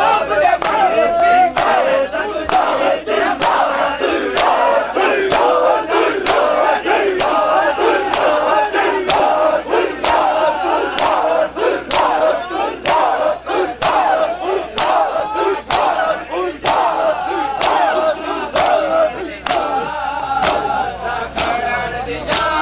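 Crowd of mourners beating their chests in unison in Shia matam, a sharp slap of bare hands on chests about every 0.7 seconds, keeping a steady beat. Under the slaps, many men's voices chant and shout loudly.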